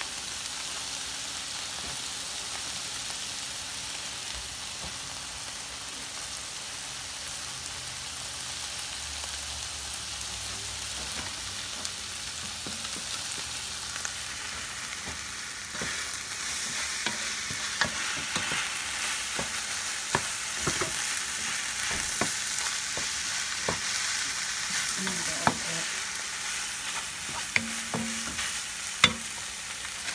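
Ground turkey frying in a large skillet, a steady sizzle. About halfway through, stirring with a wooden spoon begins: the sizzle grows louder, with scattered scrapes and knocks of the spoon against the pan.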